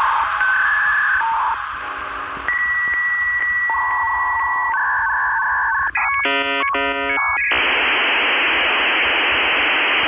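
Electronic telephone-line tones like a dial-up modem connecting: a series of steady beeps at changing pitches, a short burst of stacked chord-like tones about six seconds in, then steady hiss from about seven and a half seconds in.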